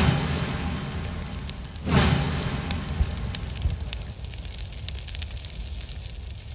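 Sound effect of an animated outro title: a deep hit at the start and another about two seconds in, each followed by a crackling, fizzing hiss like burning sparks that slowly fades.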